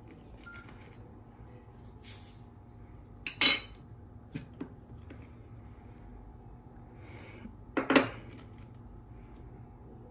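Small metallic clicks and clinks as a Nokia 6700 classic's steel battery cover is taken off and its battery removed, with two sharper, louder clacks about three and a half and eight seconds in.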